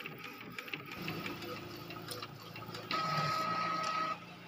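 Epson L805 inkjet printer printing the back side of a sheet, its mechanism running with a soft uneven whir. About three seconds in, a louder steady high-pitched whine starts as the printed sheet is fed out, stopping at the end.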